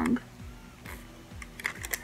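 Paper receipt being handled: soft rustling, then a quick run of small crinkling crackles in the second half as the long slip is unfolded.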